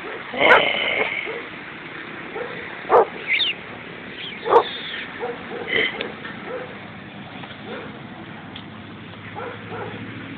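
Dogs wrestling, with a handful of short barks and yelps in the first six seconds, one with a high whine, then quieter scuffling.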